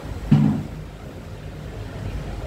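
Steady low rumble of street traffic, with a brief low-pitched sound about a third of a second in.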